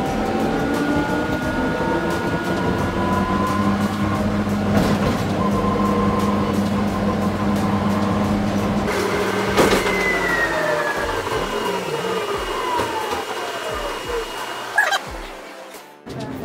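Electric airport people-mover train running. Its motor whine climbs slightly in pitch as it gets under way and holds steady, then falls in pitch from about ten seconds in as it slows down, while the low running hum drops away. A sharp click comes shortly before the slowdown and another near the end.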